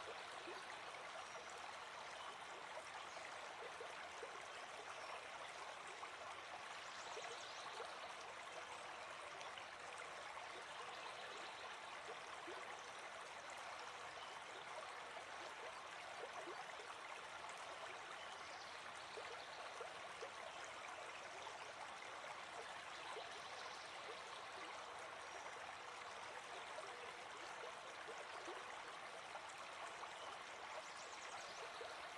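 Faint, steady running water of a flowing stream, a nature-sound background bed.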